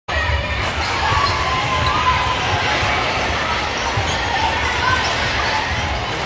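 A basketball bouncing on a hardwood gym court, heard as repeated low thuds, over a steady murmur of voices echoing in the gym.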